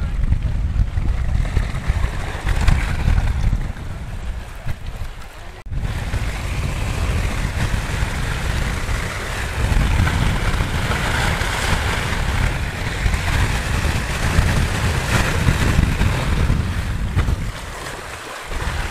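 Wind buffeting the microphone with a low rumble, over waves washing and breaking against shoreline rocks. The sound dips about five seconds in and comes back abruptly, with more surf hiss afterwards.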